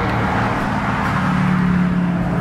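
A motor vehicle running close by: a steady rush of noise over a low engine hum, which grows a little stronger in the second half.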